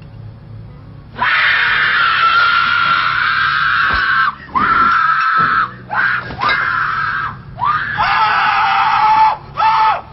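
A person screaming: one long high scream starting about a second in, then a run of shorter screams that drop lower in pitch near the end.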